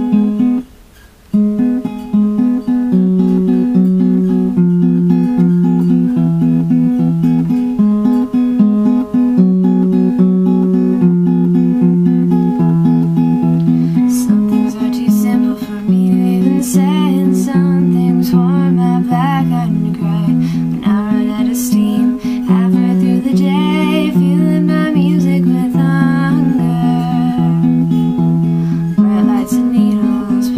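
Acoustic guitar playing a song's intro: a repeating chord pattern of picked notes. It begins with a chord, breaks off briefly, then runs on steadily.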